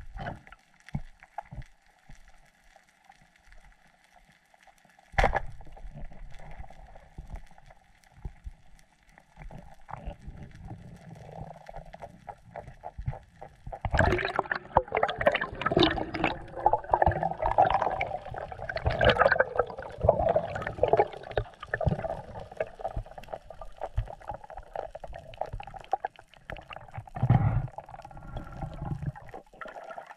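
Underwater sound at a diver's camera: a single sharp snap about five seconds in, then from about halfway a long stretch of loud bubbling and gurgling water, with bubbles streaming past the lens.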